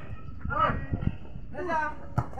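Short raised voices calling out, twice, with a couple of dull thuds around the middle.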